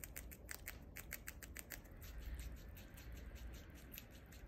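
A flying squirrel gnawing a sweet potato leaf stalk: a quick run of small crisp bites, about six a second, thinning out after the first couple of seconds.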